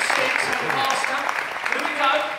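An audience applauding, a steady patter of many hands clapping, with voices talking over it.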